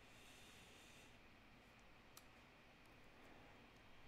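Near silence: room tone with a faint hiss in the first second and a few faint clicks, the clearest about two seconds in.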